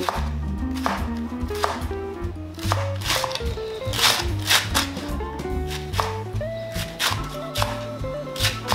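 Chef's knife slicing through a leek onto a wooden cutting board: crisp, irregular knocks of the blade on the board, roughly two a second, under background music.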